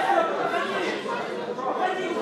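Several people talking and calling out at once in overlapping chatter, the voices of onlookers and coaches at the edge of a wrestling mat.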